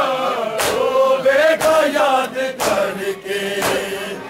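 Men's voices chanting a noha (Shia lament) in long, drawn-out lines, with chest-beating (matam) striking in time about once a second, four strikes in all.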